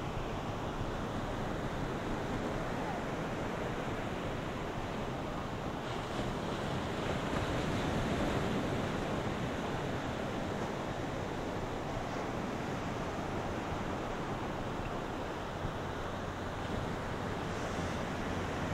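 Ocean surf breaking on the beach, heard as a steady low rush of noise that swells slightly about halfway through, with some wind noise on the microphone.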